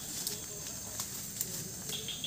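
Steady high-pitched drone of insects in tropical undergrowth, with a few faint ticks and rustles.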